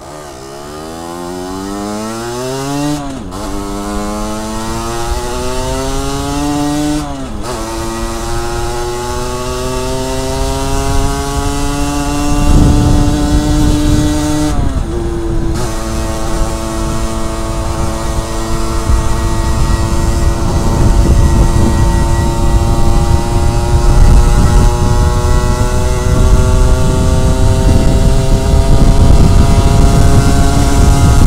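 Sport motorcycle engine accelerating away through the gears: the pitch climbs and drops sharply at three upshifts, about 3, 7 and 15 seconds in, then rises slowly as the bike settles into a cruise. Wind noise on the helmet-mounted microphone grows louder as the speed builds.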